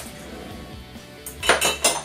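Dishes and cutlery clattering as items are lifted out of a dish drainer, a quick run of sharp clinks starting about one and a half seconds in.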